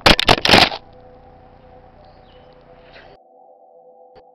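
Loud, rough rustling bursts, like a body crashing through grass and ferns, for less than a second. A steady synthesized drone of a few held tones follows under faint hiss and drops quieter about three seconds in.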